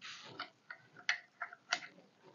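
Wooden kitchen utensils knocking against each other and against their bamboo holder as they are handled: a quick, uneven series of about six light wooden clicks.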